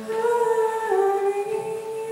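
A young woman singing solo, holding one long note that drops a step about a second in and rises back shortly after.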